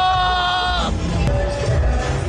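A person's long, high-pitched wavering whine, held and then cut off about a second in, as a scorpion goes into the mouth. Background music with a steady low beat runs underneath.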